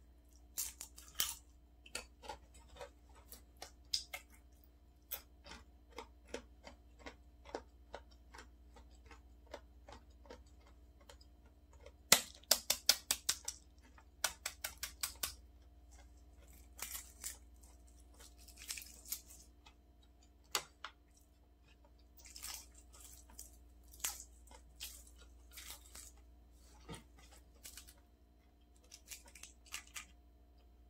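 Close-up eating sounds: chewing clicks in the first seconds, then a quick run of sharp taps near the middle as a boiled egg's shell is cracked, followed by the dry crackle of the eggshell being peeled off by hand. A faint steady hum sits underneath.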